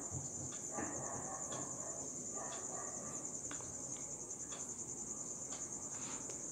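A cricket trilling steadily in a high, fast-pulsing tone, with faint scratches of a pen writing on paper.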